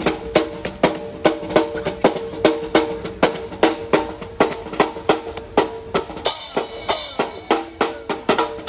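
Snare drum slung from a strap and played with sticks in a steady, even beat of about two to three strokes a second, over a held note. From about six seconds in, the hits get brighter and busier.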